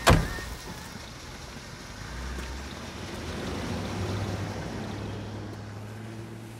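A car door slams shut once at the start. Then the station wagon's engine hum swells as it pulls away and fades off.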